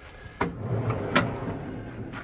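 A metal slide-out drawer in a ute canopy is unlatched with a click and pulled out on its runners. It rolls with a steady rumble, with a sharper click about a second in.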